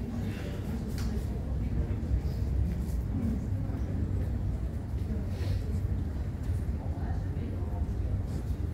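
Airport terminal background: a steady low rumble with distant, indistinct voices and a few faint clicks.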